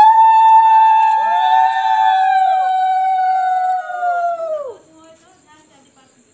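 Conch shells blown together during the puja: three long, steady, overlapping blasts at slightly different pitches, the second and third joining about half a second and a second in, all sagging in pitch and cutting off near five seconds in.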